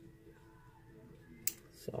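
A single sharp click about three-quarters of the way in, from small crafting tools being handled against the cutting mat, then the start of a spoken word.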